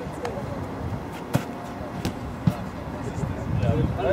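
A few sharp thuds of footballs being kicked, the loudest a little over a second in and another about halfway, over background voices.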